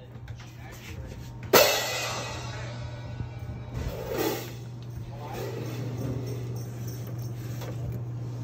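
Stainless steel drinking fountain turned on with a sharp clunk of its push bar about a second and a half in, then the water stream from the bubbler running steadily, over a low steady hum.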